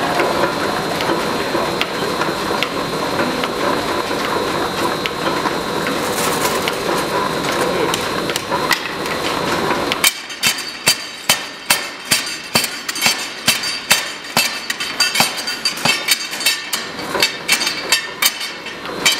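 A chain-forge power hammer: a dense, steady mechanical clatter, then about ten seconds in a run of sharp, ringing metal-on-metal blows at roughly three a second as the hammer forge-welds a red-hot chain link.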